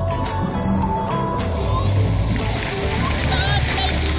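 Splash-pad fountain jets spraying up and splattering back onto the wet pad, a steady hiss of water, with voices and music in the background.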